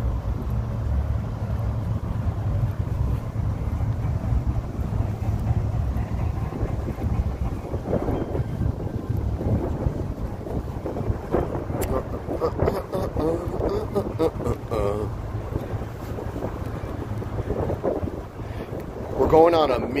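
Low rumble of wind on a phone microphone mixed with road traffic going by, strongest in the first few seconds, with faint talking in the second half.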